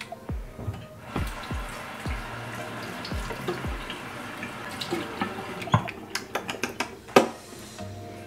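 Water running from a bathroom sink tap as lip scrub is rinsed off, over background music with a steady beat. Several sharp clicks and knocks near the end.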